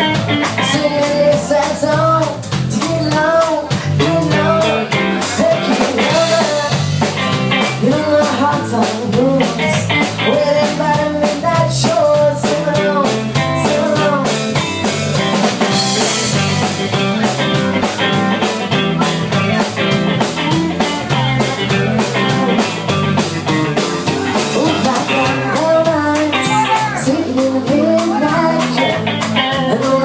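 Live rock band playing: electric guitars, electric bass and a drum kit, with a steady beat and a melody line bending in pitch above it.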